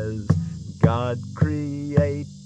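Acoustic guitar strummed in a steady rhythm, about two strums a second, with a man's voice singing along in long held notes that glide up about a second in.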